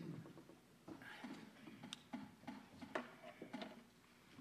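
A congregation finding the announced hymn: faint, scattered rustles and light ticks and knocks of hymnal pages turning and people shifting.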